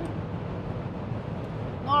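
Steady tyre and wind noise inside the cabin of a Chery Tiggo 7 Pro SUV travelling at motorway speed.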